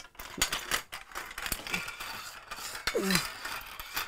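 Metal C-stand being folded up by hand: a run of irregular clanks and clinks as its legs, riser and arm knock together and are handled.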